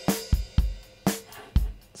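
Multitrack acoustic drum kit recording playing back through a heavily compressed bus: kick and snare hits over a dense cymbal and hi-hat wash, deliberately excessively compressed.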